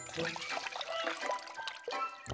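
Water trickling from a watering can onto potting soil, a cartoon sound effect, with light background music. The can is running out.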